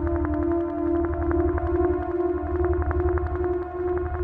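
Electronic music from analogue synthesizers and drum machines: held synth tones that step slowly in pitch over fast, even ticking and a pulsing low bass.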